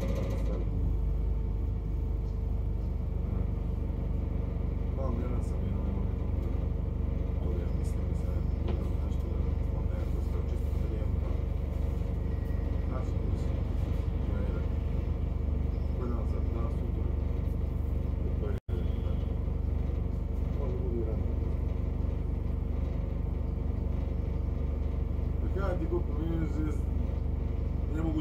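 London double-decker bus engine idling while the bus stands in a traffic queue, a steady low rumble and vibration heard from the upper deck.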